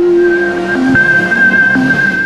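Synthesized logo-sting music for a news channel ident: long held tones over a rushing, hissy whoosh, with a sharp click at the start.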